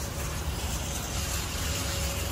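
Steady low rumble and hiss of outdoor parking-lot background noise, with no distinct event.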